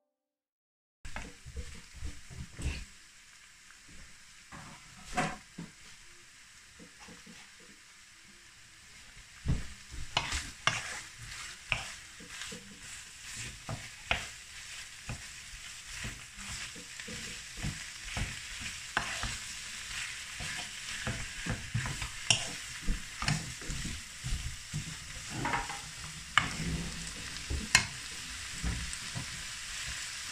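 Beef mince and onions sizzling in a frying pan as a wooden spoon stirs them, its edge scraping and knocking against the pan at irregular moments. The sizzle starts about a second in and grows louder as the pan heats.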